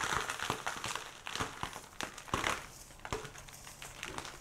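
Dry, chunky potting mix with perlite crumbling off a Hoya's root ball and falling onto a cloth-covered table, with irregular dry crackling and rustling as the roots are shaken and worked by hand. The mix and roots are very dry, the roots ruined by dry rot.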